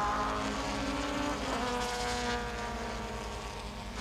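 Race car engine heard from an onboard camera inside a TC1600 touring car, running steadily at speed. Its note dips slightly in pitch about one and a half seconds in, and the sound slowly fades.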